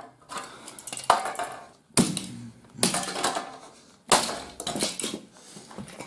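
Sheet-metal casing and plastic parts of a broken disc player clanking and crunching as it is wrenched apart: a handful of sharp metallic clanks about a second apart, each ringing briefly.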